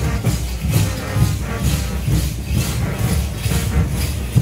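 Brass band music with a strong low bass line, and a steady jingling, rattling beat in time with it, about two to three strokes a second.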